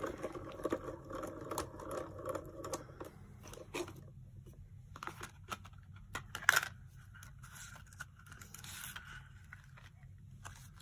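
Craft handling sounds of a die-cutting sandwich being opened: plastic cutting plates scraping and clicking and cardstock being peeled off a thin metal die. Dense rustling and scraping for the first few seconds, then scattered light clicks, the sharpest a little past the middle.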